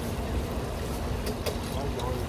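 Large vat of frying oil bubbling as chicken cutlets deep-fry, over a steady low rumble of street traffic. A short click sounds about one and a half seconds in.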